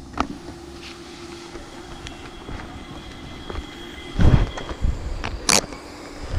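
Street background with a faint steady hum, then a motor vehicle's engine is heard briefly about four seconds in, followed by a sharp click near the end.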